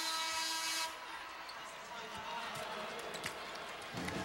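Basketball arena horn blares for about a second at a stoppage in play, then the arena crowd murmurs.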